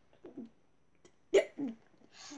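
A person's brief non-word vocal sounds: a faint short one early, then a sudden sharp one with a quick falling tail about two-thirds of the way in, the loudest event.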